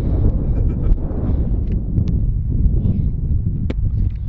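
Wind buffeting the microphone: a loud, steady low rumble, with one sharp click near the end.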